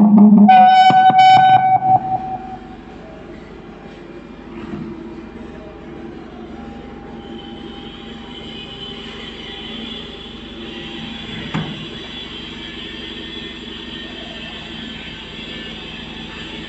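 Karaoke microphone feeding back through a barrel Bluetooth speaker: a loud ringing howl for about two seconds, then a quieter steady hum with a faint high whine building from about seven seconds in.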